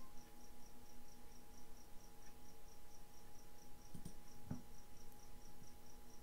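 Faint background noise: a high, thin chirp repeating about four times a second over a steady low electrical hum, with two soft clicks about four seconds in.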